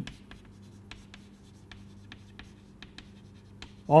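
Chalk writing on a chalkboard: a run of short, sharp taps and scratches as a word is written letter by letter, over a low steady hum.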